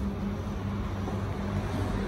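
A steady low mechanical hum, like a running engine or motor, with a faint regular pulsing in its tone.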